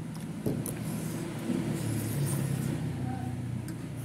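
A metal fork clicks once against a plate about half a second in, over a low, steady rumble.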